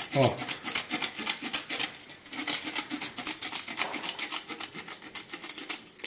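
Sheet-metal shears cutting sandpaper around the edge of a sanding disc: a quick, even run of short, crisp snips, several a second.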